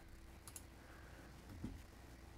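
Near silence with a faint computer mouse click about half a second in, and a soft low sound a little before the end.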